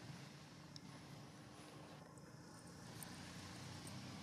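Near silence: a faint steady outdoor background hiss, with a couple of tiny ticks.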